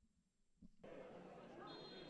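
Near silence, then faint stadium ambience from about a second in, with a brief faint high tone near the end.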